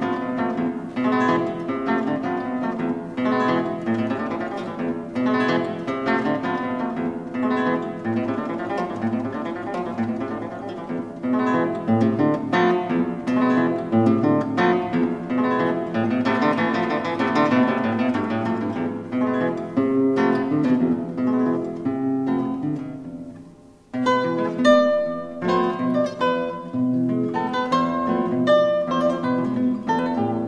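Background music: a solo acoustic guitar playing plucked melodic notes. It fades out a little over three quarters of the way through, and a new guitar passage starts straight after.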